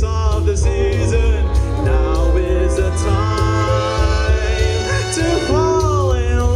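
A male singer singing live into a microphone over amplified instrumental accompaniment with a heavy, steady bass; the sung notes waver and bend.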